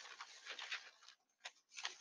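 Faint rustling of a folded newspaper sheet being handled and opened, in short papery scrapes, with a brief lull and a single click about a second and a half in.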